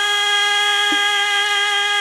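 Khorezmian xalfa folk music: one long, steady note held at a single pitch, with a soft tap about a second in.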